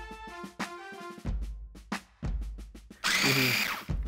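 Background music with plucked notes and drum hits. About three seconds in, an electric mini food chopper starts with a loud motor whine, chopping the stuffing mixture for squid tubes, and it stops briefly just at the end.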